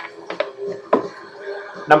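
A few soft clicks of metal bottle caps as a hand rummages in a cigar box and draws one out.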